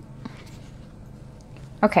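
Faint rustling and scraping of a cardboard packaging sleeve being handled and opened, over a steady low hum. A woman says "okay" near the end.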